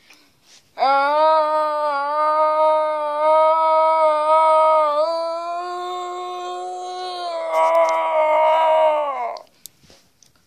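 A child's voice holding one long drawn-out cry on a near-steady pitch for about eight seconds, stepping up slightly about halfway and turning rasping near the end, an imitation of Godzilla's roar.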